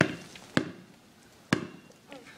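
A basketball bouncing on an asphalt driveway: three sharp, separate bounces with short pauses between them.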